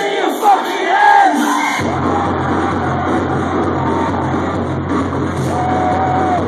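Loud electronic dance music played by a DJ over a club sound system, with a crowd whooping and cheering. The bass drops out for the first couple of seconds, then a heavy, steady pulsing bass beat comes back in about two seconds in.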